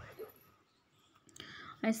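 Soft whispered speech and breathing from a person, with normal speech starting near the end.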